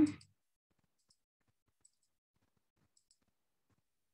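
A few faint, sharp clicks spread through a quiet stretch, some coming in quick pairs.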